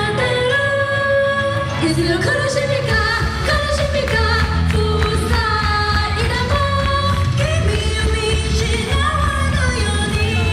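Idol-group pop song played loud through a concert sound system: female voices singing a melody over a dense backing track, with the bass coming in heavier about three seconds in.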